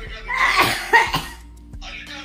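A person coughs twice in short bursts, about half a second and a second in, over music playing from a phone's speaker.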